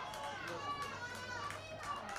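Footballers shouting over one another in a goal celebration, several raised voices at once, with sharp claps and hand slaps among them.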